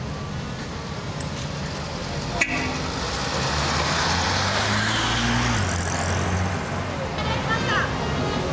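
Classic Mercedes-Benz SL roadster's engine accelerating away from a standing start and passing close by. Its pitch rises, then drops suddenly a little past halfway at a gear change. A sharp click comes about two and a half seconds in, and crowd chatter runs underneath.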